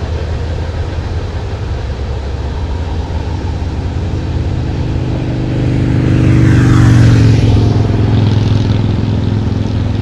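A car driving past close by on the road: its engine hum and tyre noise build, peak about seven seconds in with a falling sweep as it passes, then ease off. A steady low traffic rumble runs underneath.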